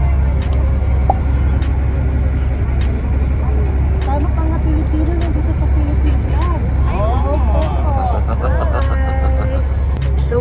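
Steady low rumble of a passenger ferry under way, with people talking nearby from about four seconds in.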